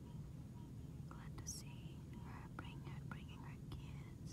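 A person whispering softly from about a second in, over a steady low hum.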